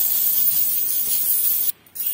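A large heap of Philippine peso coins stirred and swept by hand: a dense, hissing shuffle of many coins sliding over one another. It cuts off suddenly near the end.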